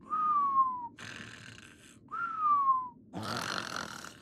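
Two falling whistled notes, each just under a second long and about two seconds apart, as part of a comic imitation; shortly before the end a loud, rushing, open-mouthed noise follows.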